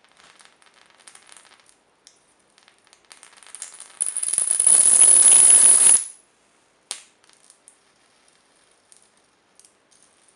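High-voltage arc from a 555-timer-driven flyback transformer crackling between the output lead and a metal rod, with a high-pitched whine over it. About four seconds in, the arc grows loud for two seconds and then cuts off suddenly. A single snap follows, then quieter crackling.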